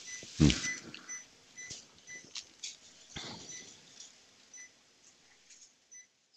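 Faint, short electronic beeps from cath-lab monitoring equipment, repeating at uneven gaps of about half a second to a second, over a quiet room with a few small clicks.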